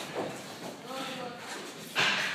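People talking at a distance in a large, echoing gym hall: scattered, indistinct voices.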